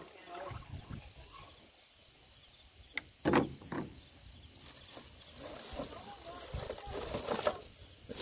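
Pesticide mix being poured from a plastic jug into a sprayer tank, faint and steady, then a sharp click and two louder short knocks of handling about three seconds in.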